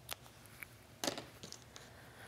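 Small sharp scissors snipping through fabric: two faint, short snips about a second apart, with a few lighter ticks of handling between them.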